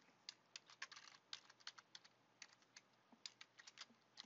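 Faint typing on a computer keyboard: a run of irregular key clicks as a password is entered, with a short pause about halfway through.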